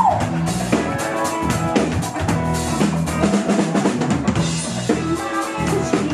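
Live rock cover band playing, the drum kit loudest with a steady beat over electric bass and guitar.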